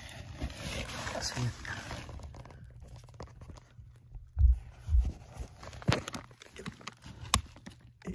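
A screwdriver prodding and scraping at a wooden sill plate that is wet and soft with deterioration, mixed with scuffing and handling noise. There are a couple of dull low thumps about halfway and a few sharp clicks near the end.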